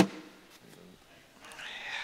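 A thrown cornhole bag lands on the board with a single sharp thud at the very start, followed by a short ring and then quiet arena background.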